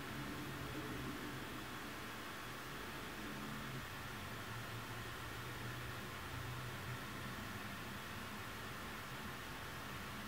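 Quiet room tone: a steady, faint hiss with a low hum underneath, and no distinct sounds.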